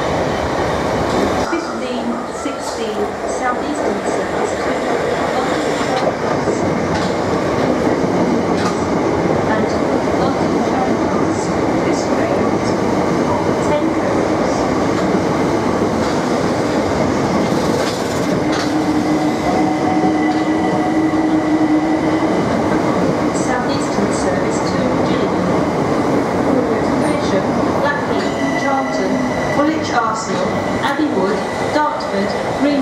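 Southeastern electric multiple-unit passenger trains moving along the platform at close range: a steady loud rumble of wheels on rails. A held hum comes in about two-thirds of the way through, and a thin high whine comes near the end.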